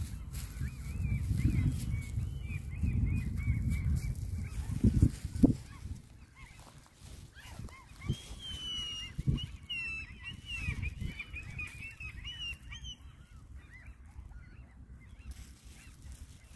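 Waterfowl calling: a run of short honking calls, busiest in the middle and fading towards the end, over a low rumble that dies away after about six seconds.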